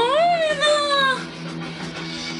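A high-pitched, meow-like vocal call that rises then slowly falls over about a second and a half, loud over strummed guitar background music.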